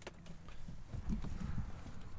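Footsteps on asphalt pavement: a few soft, irregular steps.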